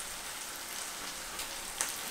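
Eggs, onions and tomatoes frying in oil in a pan, a steady, even sizzle.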